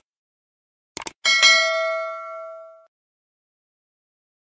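Subscribe-button animation sound effect: a quick double mouse click, then a bright notification bell ding that rings out and fades over about a second and a half.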